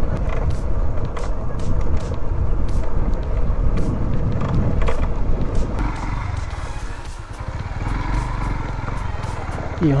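Motorcycle riding along a rough road: a low rumble of engine and wind on the camera with scattered small clicks, growing quieter in the second half as the bike slows.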